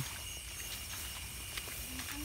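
Quiet night-time field ambience: a faint, steady insect chorus, with a few soft clicks about one and a half to two seconds in.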